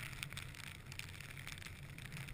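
Wind rumbling on the camera's microphone in blowing snow, a steady low noise with a few faint scattered ticks.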